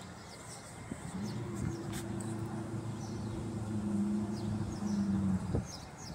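A low, steady engine hum with an unchanging pitch that sets in about a second in, holds for roughly four seconds, then cuts off shortly before the end.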